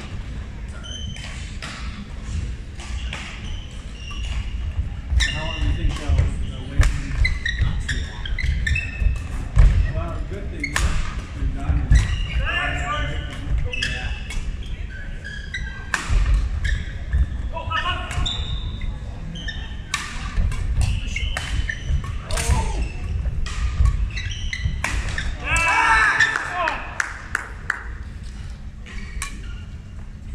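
A badminton doubles rally: repeated sharp hits of rackets on the shuttlecock, irregularly spaced, echoing in a large sports hall, mixed with players' voices and calls.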